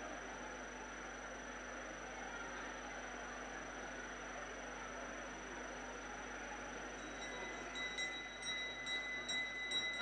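Steady background hiss. About seven seconds in, a puja hand bell starts ringing with quick repeated strokes and a high, clear ringing tone that carries on to the end.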